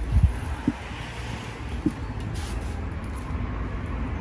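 A steady low rumble of background noise, with three short soft knocks in the first two seconds, the loudest right at the start.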